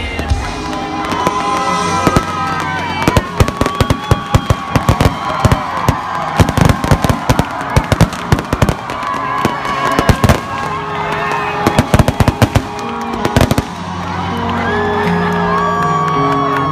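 Stage fireworks going off in a rapid run of sharp bangs and crackles, from about two seconds in until about thirteen seconds, over crowd noise and music. Deep bass notes come back in near the end.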